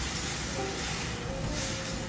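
A wooden spatula stirring sugar into simmering red beans in an aluminium pan, with wet scraping strokes over a steady hiss.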